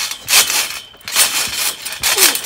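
A garden trampoline bouncing under a jumper: a sudden noisy rustling burst from the mat and springs with each bounce, about once a second.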